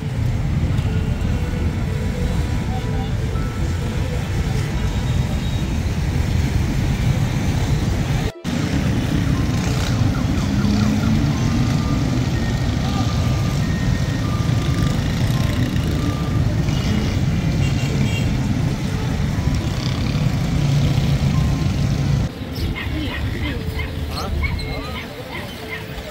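Busy city street ambience: motorbike and car traffic running steadily under the chatter of many voices.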